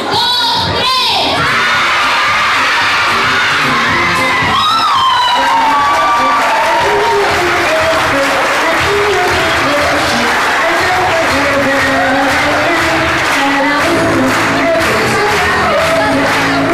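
A crowd of young children cheering and shouting, with music playing over them; a melody becomes clearer about five seconds in.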